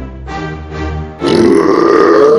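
A cartoon alligator character's voice: a long, low, steady drawn-out sound, then about a second in a much louder, higher, raspy yell.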